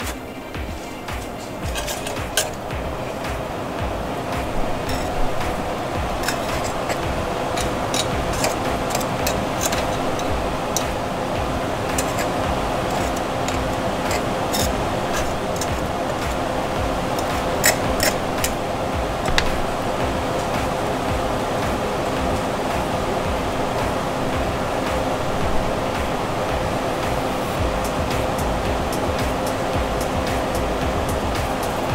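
Waffle batter sizzling steadily inside a hot cast-iron Griswold waffle iron on the burner, building over the first few seconds and then holding, with scattered sharp crackles and clicks and a steady low hum underneath.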